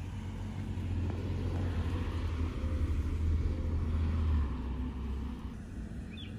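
Sheriff's patrol car driving up and stopping: a low engine and tyre rumble that grows louder through the middle and fades out near the end.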